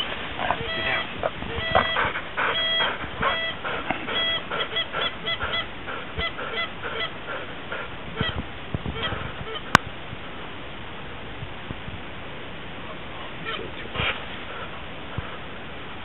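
Geese honking: a dense run of short honks that thins out after about six seconds, with a few faint honks later. A single sharp click comes a little under ten seconds in.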